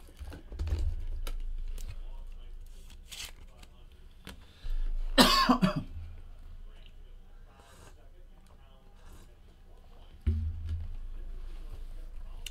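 A man coughs once, sharply, about five seconds in, amid soft clicks and rustles of trading cards and packaging being handled on a table.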